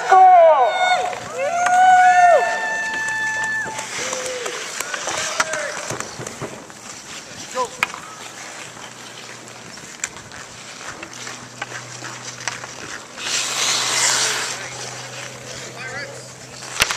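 Ice hockey played on an outdoor rink. Voices call out with long drawn-out shouts in the first few seconds. After that comes a low background of skates on the ice and a few sharp stick or puck clicks, with a louder skate blade scraping across the ice about thirteen seconds in.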